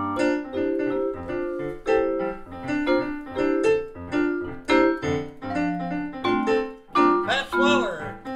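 Yamaha digital piano playing a jazz piano solo of struck chords and single-note lines in a swinging rhythm. A brief voice cuts in near the end.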